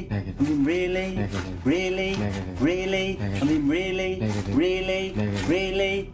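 Music: a male voice singing a run of short notes, each sliding up and then held, about two a second, over a steady low accompaniment.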